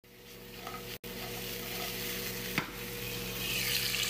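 Food frying in a pan on the stove: a steady sizzle from diced potatoes and then a searing steak. It cuts out briefly about a second in and gets louder and hissier near the end.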